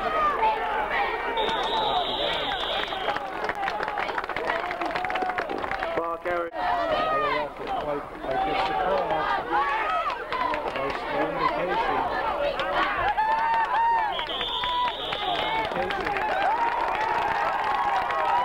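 Sideline spectators shouting and cheering, many voices overlapping. A referee's whistle shrills twice, once about two seconds in and again about fourteen seconds in.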